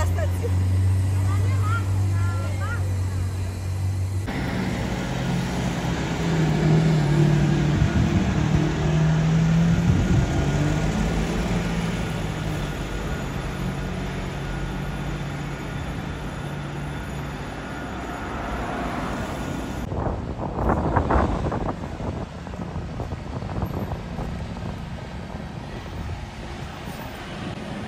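Supercar engines in street traffic, heard over several cuts: first a steady low idle, then an engine running at higher, wavering revs. Near the end there are a few short, louder surges.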